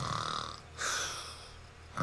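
A cartoon character snoring: a rasping snore with a low rumble, then a hissing breath out about a second in.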